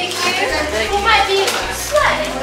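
Children and adults chattering over one another, a crowd of young voices with no single speaker standing out.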